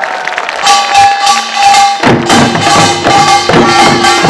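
Korean pungmul folk percussion band playing a fast, driving rhythm of drum and metallic strokes, with a held high tone over it. Deeper drum beats come in about two seconds in and fill out the sound.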